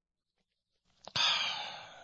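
A man's breath, breathy and unvoiced, coming after a second of quiet: it starts suddenly about a second in and tapers off.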